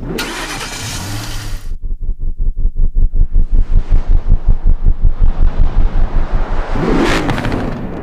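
A car engine turning over in rapid, even pulses, about six a second, after a rushing noise at the start. Near the end it rises into a louder burst as it catches.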